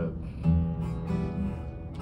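Steel-string acoustic guitar with a chord strummed about half a second in, left ringing and slowly fading.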